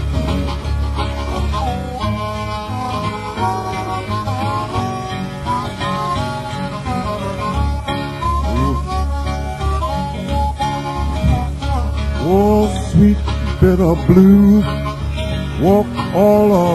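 Acoustic blues on guitar and harmonica: a steady picked bass line on the guitar, with bent harmonica notes sliding up and down and growing louder in the last few seconds.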